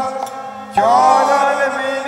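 Devotional kirtan: a harmonium holding steady notes, with a chorus of male voices entering together about three-quarters of a second in and singing a wavering, chant-like line.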